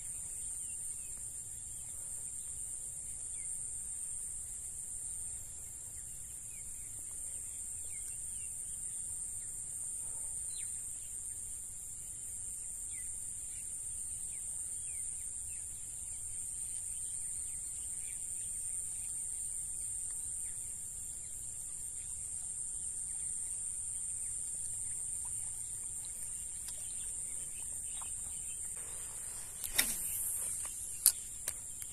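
Steady high-pitched drone of an insect chorus, with faint short chirps scattered through it. Near the end a few sharp clicks of handling.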